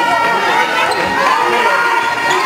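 Basketball being dribbled on a sports-hall court under a steady mix of spectators' and players' voices and shouts.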